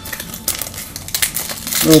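Crinkling and crackling of trading-card packaging being handled, a dense run of irregular small crackles.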